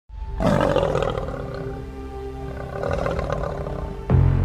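A lion's roar over intro music with long held tones. The roar is loudest about half a second in, then ebbs.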